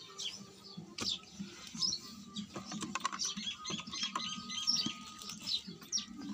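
Small birds chirping, many short high twitters overlapping, busiest in the middle, with a couple of sharp clicks or knocks.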